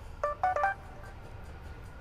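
A mobile phone sounding three quick electronic beeps, each a little higher in pitch than the last.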